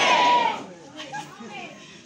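A loud, high-pitched vocal cry with wavering pitch that falls away about half a second in, followed by quieter, broken voice sounds.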